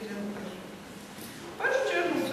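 A woman's voice in a lecture hall: a held vowel at the start, a short pause, then speech resumes near the end.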